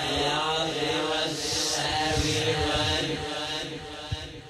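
Background vocal music: a chant-like singing voice holding long notes, growing quieter near the end.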